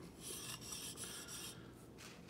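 Steel chisel back rubbed flat, back and forth, on the wet 1000-grit side of a combination sharpening stone, a faint gritty scraping while the back is flattened. The scraping thins out near the end.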